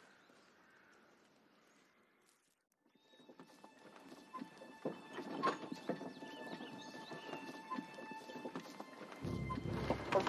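Horse hooves clip-clopping, growing louder from about three seconds in, with a steady high tone held over them.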